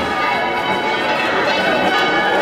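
Church bells pealing, many overlapping tones ringing together, over the noise of a large crowd.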